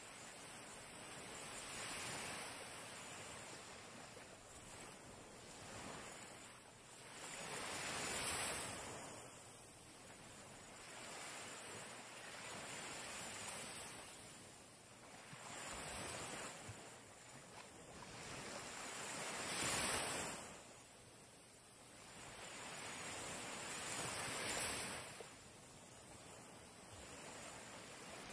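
Faint sea waves washing onto the shore, each swell of surf rising and falling away every few seconds.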